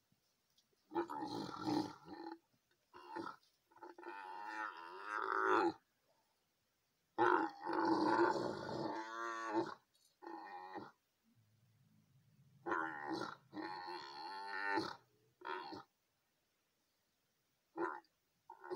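Dromedary camels calling in a run of long, loud calls, some lasting over two seconds, separated by short pauses.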